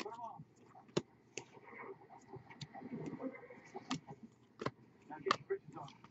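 Baseball trading cards being flipped through by hand, their edges snapping in a handful of sharp clicks at irregular intervals.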